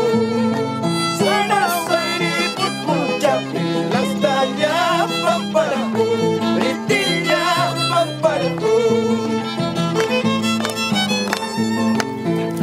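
Andean harp and violin playing a tune together: the violin carries the melody over the harp's plucked bass notes.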